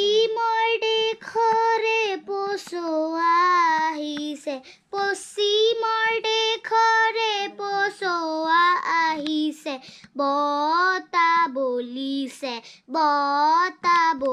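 A boy singing unaccompanied from a songbook: short sung phrases with held notes, broken by brief pauses for breath.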